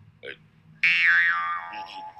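A high-pitched comic sound from the anime episode's soundtrack, starting a little under a second in and sliding down in pitch over about a second.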